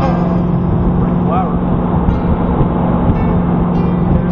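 Chevrolet SSR's V8 and its tyres heard from inside the cab while driving, a steady low drone with road noise.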